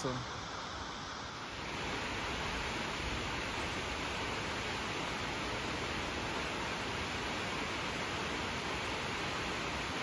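Waterfall rushing, a steady even roar of falling water that steps up slightly about a second and a half in and holds unchanged.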